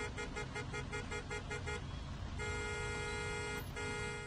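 Car horn sounded in rapid short toots, about six a second, then held in a long blast with a brief break near the end, over low steady traffic noise: a traffic-jam sound effect.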